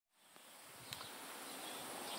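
Faint outdoor ambience fading in from silence: a low, even hiss with a steady high-pitched whine, and two light clicks in the first second.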